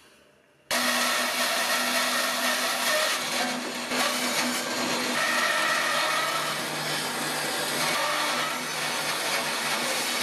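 Bandsaw cutting through a thick block of pine log: a steady motor hum under the noise of the blade in the wood, starting abruptly about a second in.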